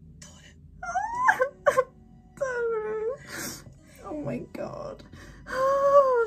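A woman crying, with a series of drawn-out, high-pitched wailing sobs; the loudest comes near the end.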